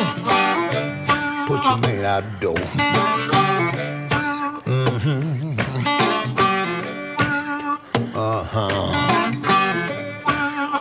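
Acoustic blues guitar playing in a gap between sung lines, with dense picked notes, some of them wavering in pitch.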